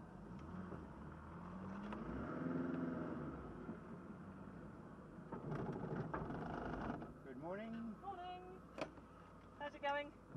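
Triumph TR7's engine heard from inside the car, running low and rising then falling in pitch about two to three seconds in as the car moves off slowly. People talk over it in the second half.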